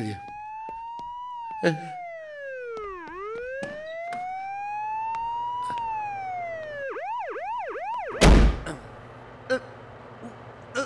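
Police siren wailing, rising and falling slowly twice, then switching to a quick yelp for about a second. About eight seconds in it is cut across by a single loud, heavy thump.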